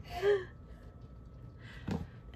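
A woman's brief, soft laugh, then quiet, with a short breath near the end.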